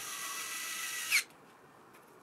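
Electric screwdriver running for about a second, driving a screw into a laptop's bottom case: a steady high whine that rises briefly and ends in a sharp click as it stops.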